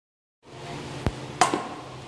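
A child's baseball bat striking a ball: a sharp click about a second in, then a louder crack with a short ringing tone, over a steady low room hum.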